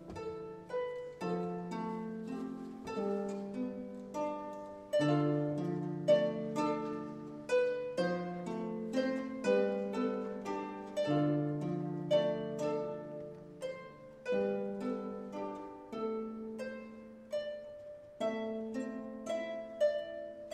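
Instrumental background music: a melody of plucked string notes, each ringing and fading, over slower held bass notes.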